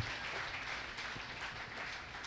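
Congregation applauding, faint and steady.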